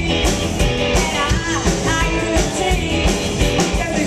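A live rock band playing, with a drum kit keeping a steady beat under a woman singing into a microphone.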